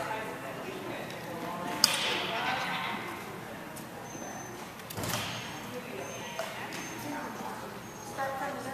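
Indistinct voices in a large hall, with one sharp click about two seconds in and a few short, high squeaks in the second half.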